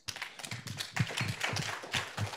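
Audience applauding: many quick, irregular claps.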